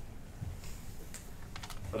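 A few light clicks of laptop keys being pressed, spread over about a second and a half.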